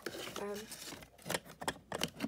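Small plastic model horse being handled in a popsicle-stick and cardboard stall: from about a second in, a quick run of sharp clicks and taps as it knocks against the wood and card.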